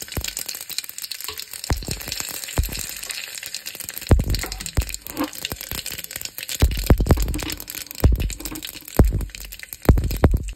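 Whole spices (mustard and cumin seeds, bay leaf, dried red chillies) crackling and popping in hot oil in an aluminium pressure cooker, with sharp pops scattered throughout and a few dull low thumps.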